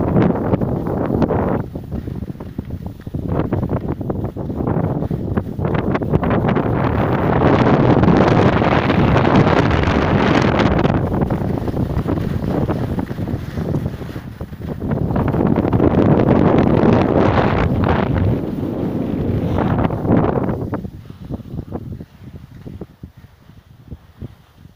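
Wind buffeting the microphone of a camera carried at skiing speed. It comes in long, loud swells, the strongest in the middle, and dies down near the end as the pace eases.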